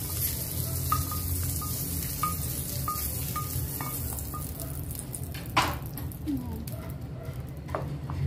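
A wooden spatula scraping fried sausage slices out of a small non-stick frying pan into a pot of spaghetti sauce, with a faint sizzle that dies away halfway through. Then stirring in the sauce, with sharp knocks of spatula or pan about five and a half seconds in and near the end.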